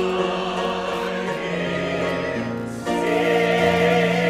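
Church choir singing slow, held chords. A new, louder chord comes in about three seconds in.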